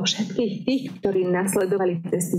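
Speech only: a woman talking steadily.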